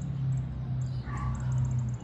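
A single short, nasal call from a Cooper's hawk about a second in, slightly falling in pitch, over a steady low hum.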